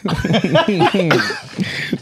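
People laughing loudly together, in short voiced bursts that fade to a quieter stretch in the second half.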